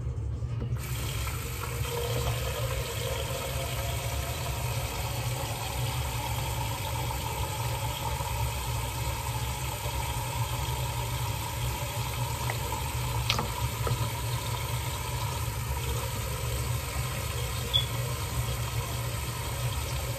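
Bathroom tap running steadily, turned on about a second in, with a low hum underneath.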